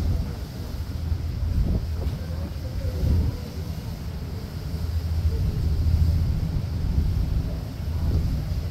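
Wind buffeting the microphone on the open deck of a vehicle ferry crossing choppy water, a low rumble that swells and eases in gusts.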